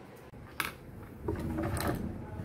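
Hands handling things on a worktable: a sharp click about half a second in, then louder rustling and knocks in the second half.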